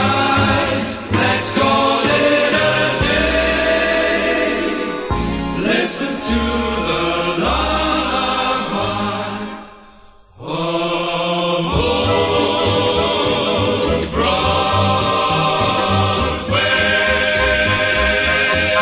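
Choir singing with small-band accompaniment. The music drops away to a brief pause about ten seconds in, then resumes.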